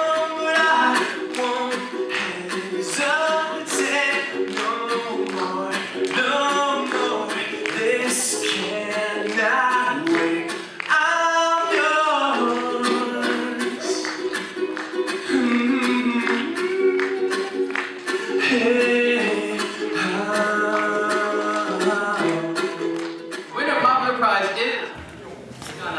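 A song with a lead vocal over light instrumental accompaniment, continuous throughout.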